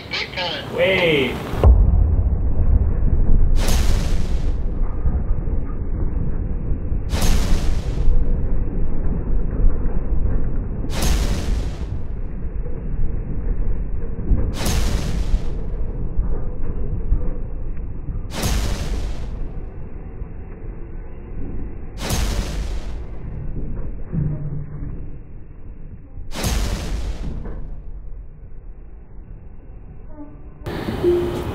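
Slowed-down braking sound of a Tesla under ABS on snow: a deep, continuous rumble. Over it comes a sharp whoosh about every four seconds, seven in all, each marking one ABS brake pulse as the slow-motion wheel locks and releases.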